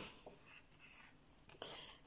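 A page of a hardback colouring book being turned by hand: a quiet rustle of paper, with a short, sharper swish near the end as the page settles.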